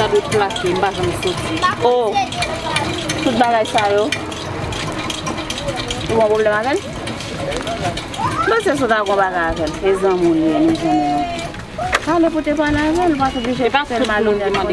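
A woman talking in Haitian Creole, with short pauses, over steady low outdoor background noise.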